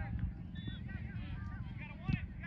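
Several distant voices calling and shouting at once, players and spectators around a youth soccer game, over a steady low wind rumble on the microphone. A sudden thud comes right at the start.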